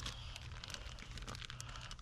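Faint crinkling of a plastic zip-top bag being handled, with many small light clicks.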